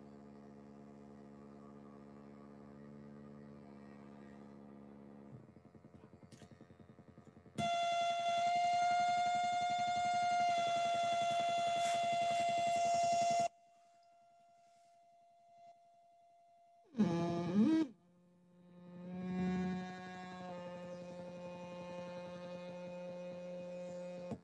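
Hand-built oscillator synthesizer droning steady, buzzy electronic tones that change as its oscillators are switched and adjusted: first a faint low drone, then a louder, higher steady tone for about six seconds that cuts off suddenly, then a lower drone. A brief swooping sound comes about two-thirds of the way in.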